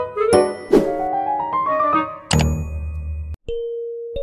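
Intro jingle of bright chime-like notes with a quickly rising run of notes, ending on a deep hit. After a brief break about three and a half seconds in, a single held note begins.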